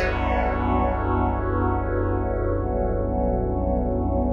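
A held chord run through a frequency shifter plugin, one stereo channel set to phase spread and the other to frequency spread. Slow falling sweeps move through the sustained tones with a chorus-like shimmer, bright at first, the upper tones fading over the first second or so.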